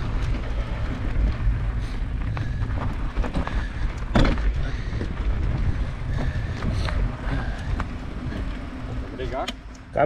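Mountain bike rolling over a stony dirt track, picked up by a handlebar-mounted camera: a steady low rumble of tyres and vibration with scattered rattles and clicks, and a sharp knock about four seconds in.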